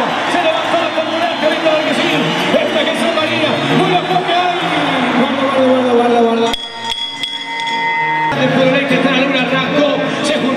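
Mostly a man talking fast, the arena commentary, which the recogniser did not write down. About six and a half seconds in the voice stops for nearly two seconds while a steady pitched tone sounds, then the talking resumes.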